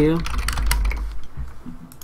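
Computer keyboard being typed on, a quick run of key clicks as the words "Thank You" are entered, over a low rumble in the first second or so.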